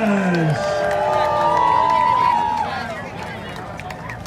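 A man's amplified voice holding a long, drawn-out call of the winner's name that falls in pitch and ends about half a second in, followed by a small crowd cheering and whooping that dies away after about three seconds.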